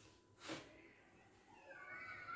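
Near silence, with a brief rustle about half a second in and a faint, wavering, high-pitched cry that starts near the end.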